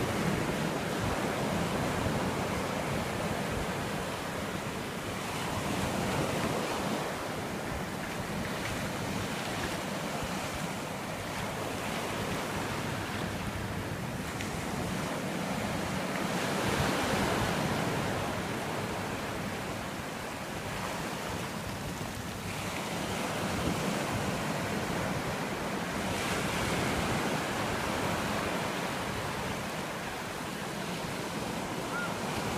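Ocean surf washing up a flat sandy beach, a steady hiss of broken water that swells and fades every few seconds as each wave runs in.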